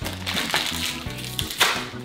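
Background music with a steady bass line, over the crackle of a hard plastic candy toy being forced open. A louder crack comes about three-quarters of the way through as a piece of it snaps off.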